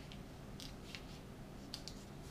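A small square of origami paper being folded and pressed into a crease by fingers, giving faint rustling with a few short, crisp crackles.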